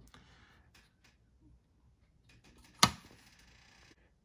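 Near silence with a few faint light clicks, then one sharp click almost three seconds in, followed by a faint steady hiss.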